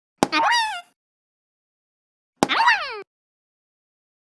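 Cartoon sound effect heard twice, about two seconds apart: each a sharp click followed by a short pitched bloop that rises and then falls.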